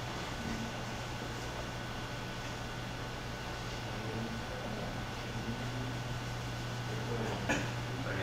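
Room tone in a quiet talk venue: a steady low hum with an even hiss beneath it, a few faint distant murmurs, and a short sharp sound near the end.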